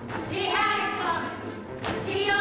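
A woman's voice calls out one drawn-out word in a stage musical's chanted opening, followed near the end by a single sharp percussive hit.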